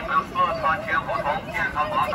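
A person's voice talking, with no other clear sound standing out.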